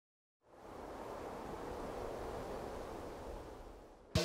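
Silence for a moment, then a soft, even rushing noise with no tune or rhythm that eases off slightly near the end.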